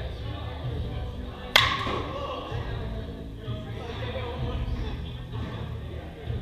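A bat striking a ball about a second and a half in: one sharp crack with a brief ring. Background music and voices echo in the large hall throughout.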